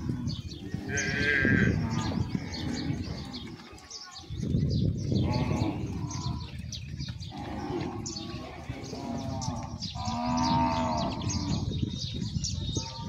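Zebu cattle mooing, several calls one after another over a low rumble, the longest about ten seconds in.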